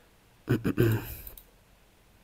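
A man's short cough, two or three quick bursts about half a second in, followed by a faint click.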